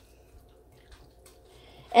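Faint stirring of spaghetti squash strands, meat sauce and ground chicken in a bowl with a spoon: a few soft wet scrapes and ticks over a faint steady hum.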